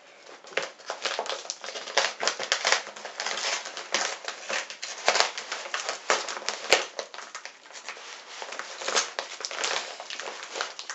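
Plastic shipping bag and its clear plastic wrapping crinkling continuously as hands pull and work at it, a steady run of irregular crackles.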